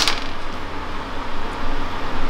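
Steady workshop background noise, an even fan-like hiss over a low hum. Near the start comes the fading ring of a stainless steel pipe just set down on the steel bench.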